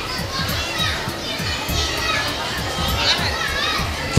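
Many children's voices chattering and calling out at once, with music playing underneath.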